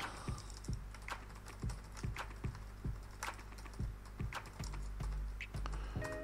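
Typing on a computer keyboard: irregular keystrokes, a few a second, as a short line of code is entered.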